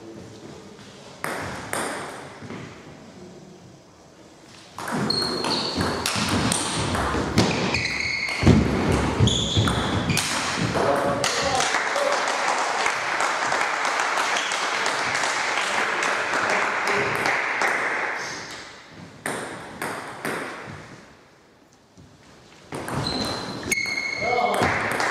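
Table tennis ball being played: sharp pinging clicks of the celluloid ball off bats, the table and the wooden floor of a sports hall. The clicks come in clusters, with a long stretch of dense, continuous noise through the middle.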